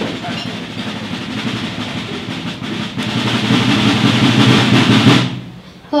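A roomful of people getting to their feet: chairs scraping and rattling with general shuffling, growing louder and then dying away abruptly a little after five seconds in.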